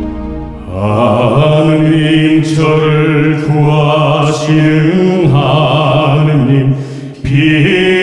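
A male voice chanting a Korean psalm verse in the Catholic yeondo style, holding long notes that step up and down in pitch, with a short break for breath near the end.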